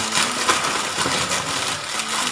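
Plastic bags and packed items rustling and crinkling as hands rummage through an open suitcase close to the microphone.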